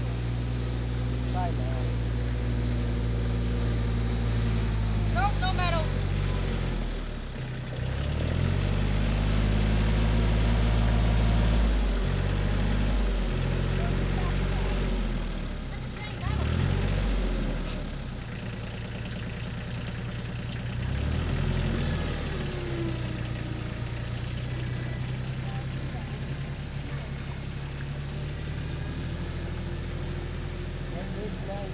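Engine of a small tractor with a front loader bucket running as it works, its note dropping and climbing several times as it is throttled up and down under load. It is loudest about a third of the way in.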